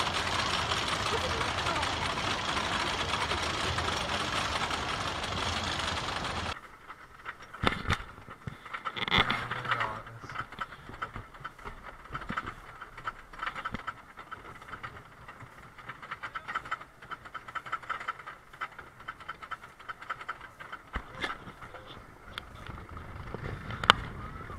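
A steady loud rush of noise that cuts off sharply about six seconds in. Then, on board a CCI wooden roller coaster, the train climbs the chain lift hill to a quick, continuous clacking of the anti-rollback ratchet and chain, with a few louder knocks and some riders' voices.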